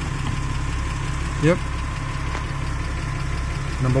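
Porsche Cayman 987's flat-six engine idling steadily, heard from inside the cabin as a low, even rumble.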